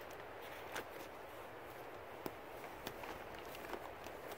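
Faint rustling and crinkling of a plastic tarp and the pine needles under it as a corner is handled, with a few sharp ticks, over a steady background hiss.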